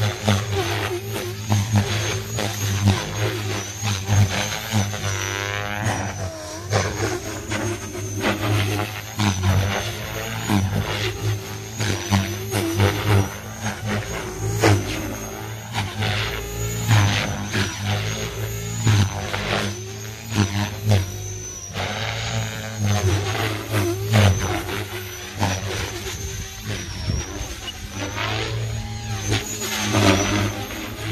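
Align T-Rex 470 electric RC helicopter flying hard aerobatics: a steady low rotor hum with repeated swooshing surges of blade noise, and a thin high whine that rises and falls as the load changes.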